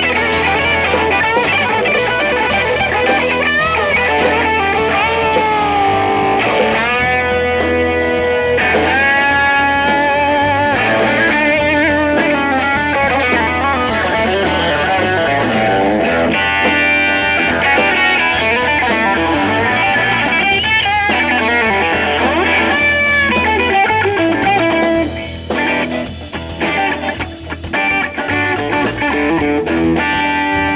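Live rock band playing: a Telecaster-style electric guitar carries a lead line with bent notes over drums and a strummed acoustic guitar. The band drops back briefly near the end before coming in full again.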